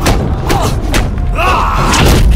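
Film fight sound effects of a sabre-against-staff fight: several sharp hits and swishes under a music score, with shouts from fighters or crowd, the loudest near the end.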